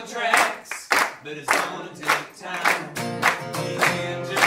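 Live acoustic guitar and singing, with the audience clapping along on the beat, a little under two claps a second.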